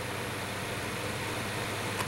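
Massey 9-inch plastic box fan running on its low speed setting: a steady whir of moving air with a faint low motor hum underneath.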